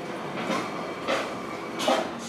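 Soundtrack of a kaleidoscope video heard through a speaker: a sharp percussive hit about every two-thirds of a second over a faint sustained musical tone.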